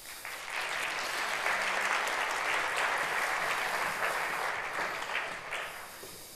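Audience applauding in a large auditorium, swelling within the first second and dying away near the end.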